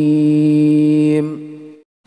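A man reciting the Quran in melodic tajwid style, holding one long steady note at the close of a verse; it fades out about a second and a half in.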